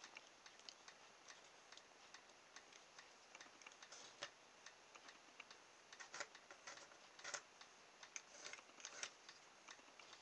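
Faint, irregular small clicks and taps from wooden popsicle sticks being handled on a cutting mat, coming more thickly in the second half.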